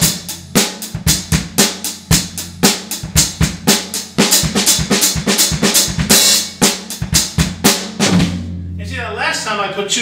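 Acoustic drum kit played at a brisk tempo in a rock groove of snare and hi-hat strokes, with doubled notes on the bass drum. The playing stops about eight seconds in, leaving a low ring, and a man's voice follows near the end.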